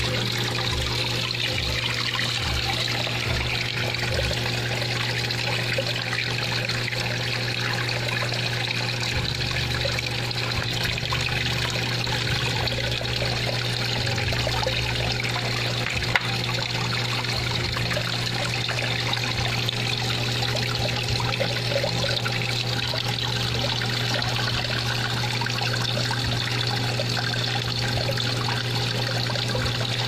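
Aquarium air line bubbling and trickling steadily in a goldfish tank, over a low steady hum, with a single sharp click partway through.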